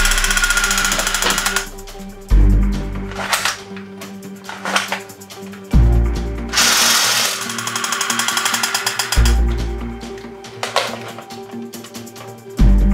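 Toy submachine guns firing their electronic machine-gun sound effect: a fast rattling burst right at the start and another a little after halfway, each lasting a second or two, with a few short plastic clicks between. Background music with a deep bass note about every three and a half seconds runs underneath.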